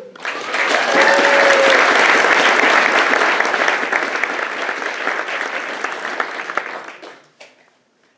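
Audience applauding, starting right away and dying out about seven seconds in.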